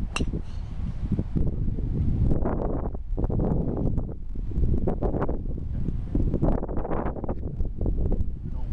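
Wind buffeting the microphone in a loud, uneven low rumble. At the very start comes one sharp, ringing crack of a golf club striking a ball.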